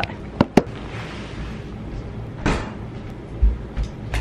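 Two sharp clicks in quick succession, then a brief rustle and a few dull low thumps near the end: knocks and handling noise in a small room.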